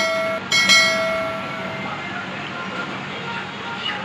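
Two bright chime-like editing sound effects about a second apart, each ringing out and fading, followed by steady room noise with a low hum.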